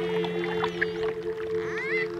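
Dolphin whistles and clicks over slow ambient music holding a steady low chord. A whistle rises in pitch near the end.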